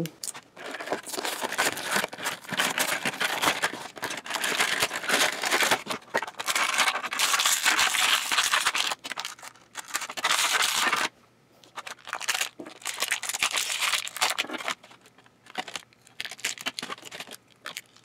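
Clear plastic blister packaging and bags crinkling and tearing as they are pulled open by hand, almost without a break for the first ten seconds, then after a short pause in short scattered crinkles.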